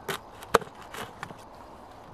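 Small knife cutting and peeling an onion on a plate: a few sharp clicks of the blade on the plate, the loudest about half a second in.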